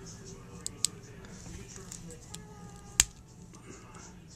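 Plastic action figure being handled, with two faint clicks just under a second in and one sharp click about three seconds in as the head is popped off its neck joint.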